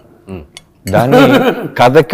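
A man's voice: a short pause, then speech resumes about a second in.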